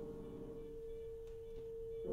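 One held, nearly pure musical tone sustains alone in a free improvisation. The other ensemble parts fade away within the first half second or so.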